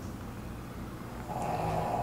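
A pet snoring faintly in the background, with one soft snore about one and a half seconds in.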